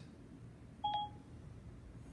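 A single short electronic beep from an iPhone's Siri, two tones sounding together, about a second in, as Siri finishes listening to the spoken command and acts on it.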